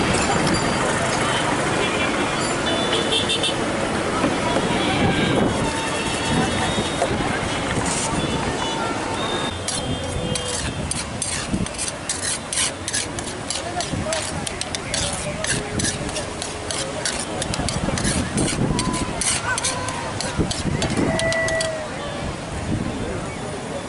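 Busy outdoor bustle with voices around a food stall. From about ten seconds in comes a run of quick metallic clicks and taps: a serving spoon clinking against a steel plate.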